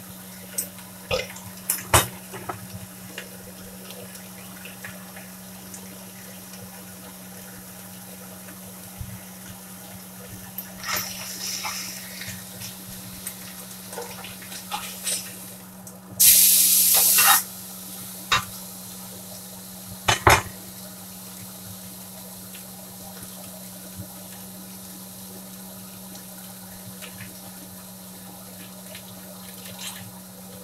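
Meat frying in a cast-iron skillet over a gas burner with a steady faint sizzle. About halfway through, a loud hiss lasts about a second as the meat is turned in the pan, and a few sharp clinks of the metal utensil against the skillet are heard.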